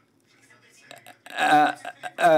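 A quiet pause, then about a second and a half in a man's voice makes a short voiced sound as he starts to speak.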